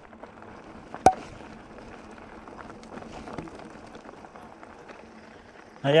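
Bicycle rolling along a gravel track: steady noise of tyres and wind, with one sharp knock about a second in.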